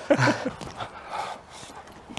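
A person's short voiced sound, then soft, breathy panting.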